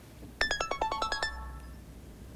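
Mobile phone ringtone or alert: a quick run of about ten bright, chime-like notes, starting about half a second in and ringing out after about a second.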